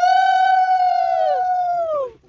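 A conch shell (shankha) blown for puja: one long, steady, horn-like note that drops in pitch as the breath gives out near the end. It is one of a series of blasts with short breaks between them.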